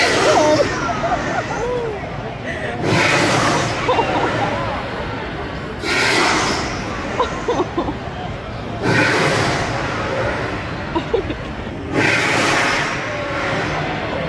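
Gas-fired flame towers shooting fireballs, each a whoosh of about a second, five times at roughly three-second intervals, over crowd chatter.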